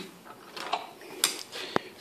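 Faint handling of small hand tools as a T-handle hex key is picked up: light rustling, a short hiss past the middle and one sharp click near the end.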